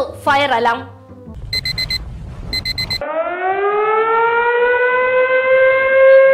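Two short bursts of rapid, high electronic beeping, then a siren that winds up in pitch and holds a steady wail, sounding as a fire alarm.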